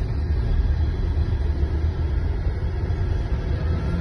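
Steady low rumble of a car's engine and road noise heard from inside the cabin while it drives along.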